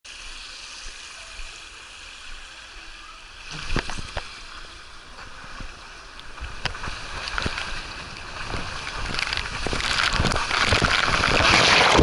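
Water running down a water slide, a steady hiss, then a few knocks as a rider sets off about three and a half seconds in. The rush of water under the sliding rider grows steadily louder as they pick up speed down the wavy drops, loudest near the end as they reach the pool.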